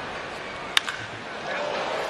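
Single sharp crack of a wooden baseball bat hitting a pitched ball, just under a second in, over a steady ballpark crowd murmur that swells slightly after the hit.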